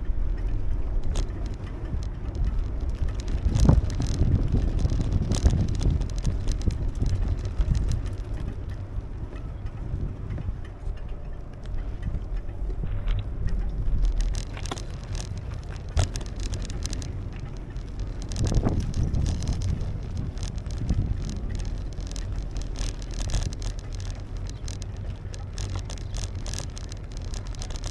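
Riding a bicycle over pavement: wind rumbling on the microphone over steady tyre and road noise, with a few sharp knocks and rattles spread through as the bike rolls over bumps and cracks.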